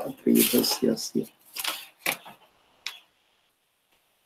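A man's voice speaking briefly at the start, trailing off into a few soft sounds, then a single sharp click about three seconds in.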